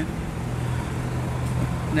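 Street traffic: a steady low engine hum from a city bus and cars running on the road.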